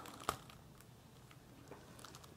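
A single sharp click about a quarter second in, followed by a few faint ticks: a shrink-wrapped plastic CD case and its packaging being handled.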